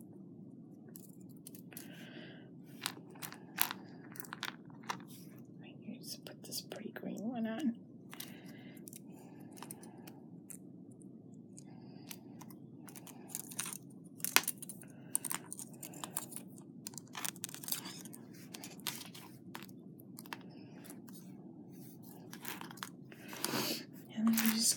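Fingers handling jewellery wire and small butterfly beads close to the microphone: irregular small clicks, ticks and rustles as beads are threaded and the wire is twisted, over a steady low hum.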